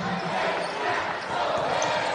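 Basketball game sound from a crowded arena: an even wash of crowd noise in a large hall, with the ball and play on the court.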